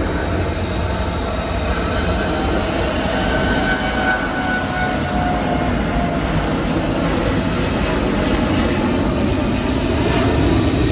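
Jet engines of a twin-engine airliner at takeoff power: a steady loud roar with a deep rumble as the aircraft rolls, lifts off and climbs. A faint whine rises out of the roar in the middle.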